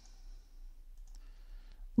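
A few faint computer mouse clicks, close together about a second in, over quiet room tone.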